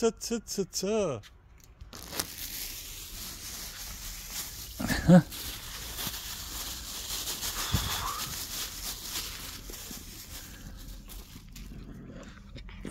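A thin plastic bag crinkling and rustling as cat food is unwrapped and tipped out onto concrete. A short loud cry comes about five seconds in.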